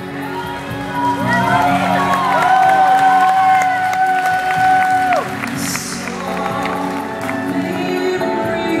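Live band music: a female soprano voice glides up and down, then holds one long high note for about two and a half seconds over sustained keyboard chords. The note cuts off about five seconds in.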